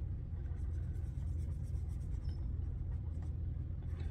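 A marker coloring in small printed icons on a paper tracker sheet, over a steady low hum.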